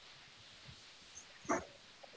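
Faint steady hiss of an open video-call audio line, broken by one short, sharp sound about one and a half seconds in.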